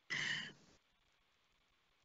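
A person's short breathy exhale, like a sigh, lasting about half a second.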